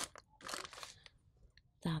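Plastic toy packets crinkling and rustling as a hand sorts through them in a display bin, with a short rustle about half a second in.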